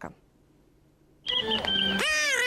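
Near silence for about a second, then sound cuts in suddenly: steady held musical tones with a shrill, high-pitched squeaky voice starting just before the end, typical of a Petrushka glove-puppet show voiced with a swazzle.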